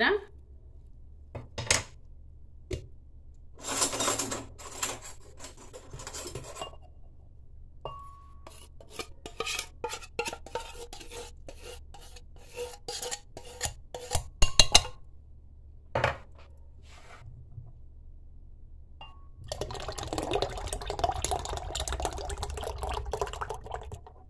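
A spoon scraping and clicking against a metal can as sweetened condensed milk is emptied into a glass blender jar. Near the end comes a steady sound of evaporated milk being poured into the jar.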